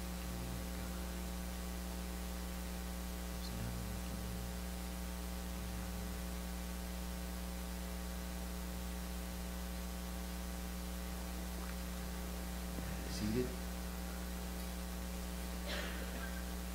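Steady electrical mains hum with a stack of evenly spaced higher overtones. A brief faint sound comes about thirteen seconds in.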